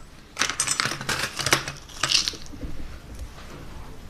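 Wooden toothpicks clicking and rattling as they are handled: a clattering burst of about a second near the start and a shorter one about two seconds in.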